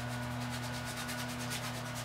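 A paintbrush rubbing acrylic paint onto canvas in quick repeated strokes, several a second, the strongest about a second and a half in, over a steady low hum.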